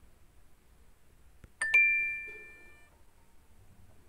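An online quiz's 'correct answer' chime: a faint click, then two quick rising bell-like notes that ring and fade away over about a second, signalling that the chosen answer is right.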